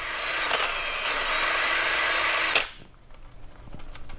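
Cordless drill spinning a rubber decal-remover eraser wheel against a wheel rim, rubbing off leftover wheel-weight adhesive: a steady abrasive hiss over a faint motor hum. It cuts off suddenly a little past halfway.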